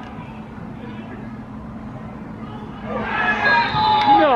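Faint voices carrying across an outdoor football pitch, then about three seconds in a loud shout goes up as players call for a foul.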